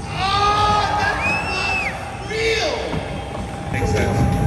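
Drawn-out shouted vocal calls of people cheering a skateboard trick, with a high whistle-like tone that rises and falls about a second in.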